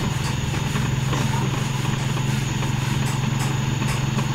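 Motorcycle engine of a Philippine tricycle (motorcycle with sidecar) running steadily while riding, a low even drone.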